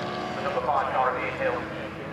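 A man's voice commentating over the circuit's public-address loudspeakers, with a BMW race car's engine running in the background as the car comes along the track.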